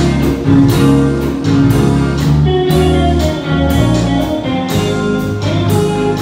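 Live rock band playing an instrumental passage: electric guitars and bass over a drum kit keeping a steady beat, with no vocals.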